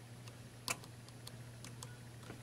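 One faint, sharp click of a fingertip tapping the plastic touch disc on top of a bedside lamp, over a low steady hum.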